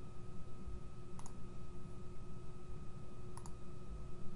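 Computer mouse clicking: a quick double click about a second in and another past three seconds, over a faint steady electrical hum.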